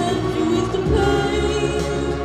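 Live band music in a slow, sustained passage, with a voice singing long held notes over layered held chords.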